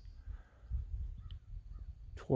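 Quiet open-air background: an uneven low rumble with a few faint bird calls about a second in.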